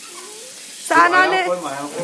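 A toddler's high-pitched voice babbling loudly from about a second in, over a faint steady hiss.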